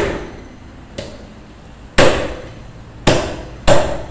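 Butcher's cleaver chopping meat and bone on a wooden tree-trunk block: a light chop about a second in, then three heavy chops in the last two seconds, each with a short ringing decay.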